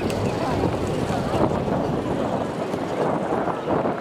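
Many voices shouting over one another around a rugby ruck, players and people on the sideline, with wind buffeting the microphone.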